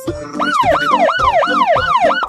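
Police siren in a fast yelp, its pitch sweeping up and down about three times a second, starting about half a second in, over a steady music beat.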